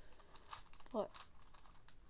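Plastic gears of a Meffert's Gear Ball clicking as its faces are twisted to scramble the puzzle: a few short, light clicks.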